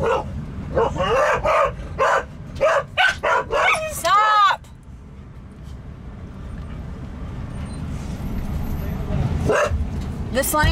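A dog yipping in a quick run of short high-pitched calls, ending in a longer whine about four and a half seconds in. After that the steady low hum of the waiting vehicle, with one more short call near the end.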